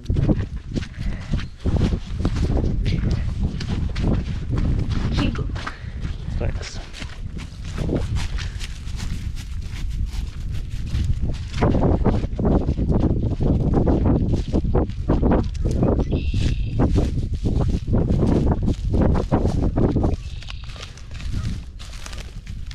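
Footsteps crunching through dry grass and field stubble, over a heavy low rumble of wind on the microphone.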